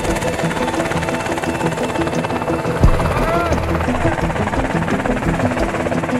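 Helicopter rotor and engine running steadily nearby, with voices over it and one sharp thump about three seconds in.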